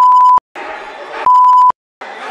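Two short, loud, steady censor bleeps, each about half a second, one at the start and one just past the middle, masking words in a recording of a parliamentary speech. The faint murmur of the chamber is heard between them.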